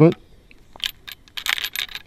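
Metallic clicks and rattles of a Marlin 1894 lever-action rifle's action being worked by hand: two light clicks about a second in, then a quick run of sharp metal clicks near the end. The action is hanging up, with the cartridge lifter catching on .44 Special rounds that it won't feed properly.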